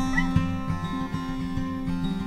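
Recorded acoustic guitar music, plucked notes over a regular low bass pattern. Just after the start there is a brief, high, rising squeak.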